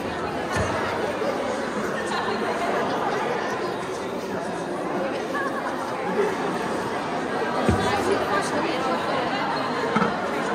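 A crowd of people talking at once in a church nave, a steady babble of overlapping chatter, with a couple of brief knocks.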